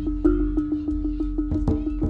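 Live jaranan gamelan music: a held note runs over a fast, even beat of struck percussion. A flurry of louder drum strokes comes about a second and a half in.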